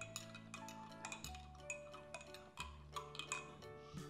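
Metal spoon stirring liquid in a drinking glass, clicking against the glass in quick, irregular ticks, over soft background music.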